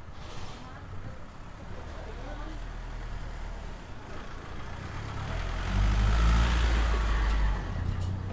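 Engine of a small white van driving slowly along a cobbled street and passing close by. It grows louder to a peak about six seconds in, then fades as the van goes past.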